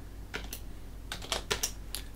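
Keystrokes on a computer keyboard: about seven separate, unevenly spaced key clicks, as a command is typed in a terminal.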